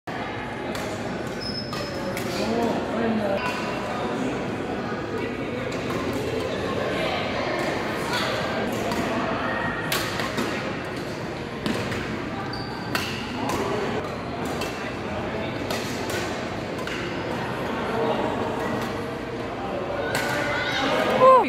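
Badminton rackets striking shuttlecocks in irregular sharp clicks, over steady background chatter of many players in a large echoing gym hall.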